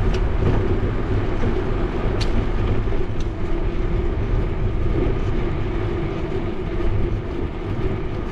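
Steady wind rumble on a bicycle-mounted GoPro's microphone while riding along a street, with road noise underneath and a couple of faint clicks, one near the start and one about two seconds in.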